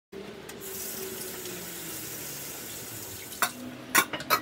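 Kitchen tap running into a sink, a steady hiss of water, then sharp clanks of stainless-steel bowls near the end.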